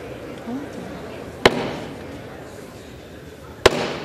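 Two sharp gavel raps about two seconds apart, each ringing briefly in the large chamber over the murmur of members talking: the presiding officer gavelling the House to order.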